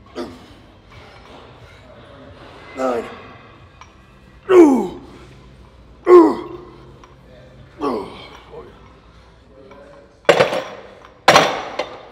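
A man grunting with effort through alternating dumbbell hammer curls: five short grunts that fall in pitch, about one every one and a half to two seconds. Near the end come two loud metal clanks, about a second apart, as the dumbbells are set down on the rack.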